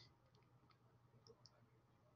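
Near silence: a faint steady hum and a few faint clicks of a computer mouse.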